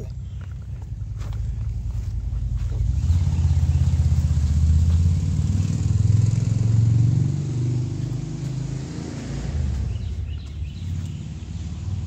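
A motor vehicle's engine rumbling low and steady. It swells to its loudest in the middle of the stretch and then fades, like a vehicle passing by.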